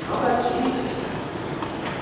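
A voice speaking briefly in the first second, over a steady background rumble of room noise.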